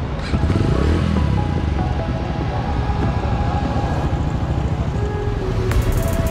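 Motorcycle engine running close by at a low, steady pace, with background music over it.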